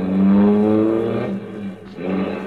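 Radio-drama sound effect of a car engine running as the car drives along, a steady drone that is loudest in the first second.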